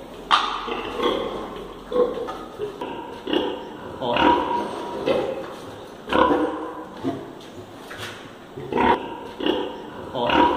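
Pigs in a sow barn calling, short grunting calls repeating at irregular intervals every second or so.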